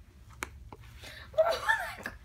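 A person biting into a hard, frozen chocolate-coated ice cream sandwich: one sharp crunch about half a second in, then a drawn-out "oh" with a wavering pitch near the end.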